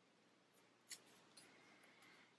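Near silence, with a few faint short ticks of sticker paper being handled, the clearest about a second in, as a sticker is peeled and pressed onto a planner page.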